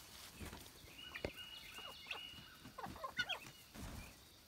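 Faint, scattered short calls from hens and guinea fowl leaving the coop, including one thin high note held for about a second.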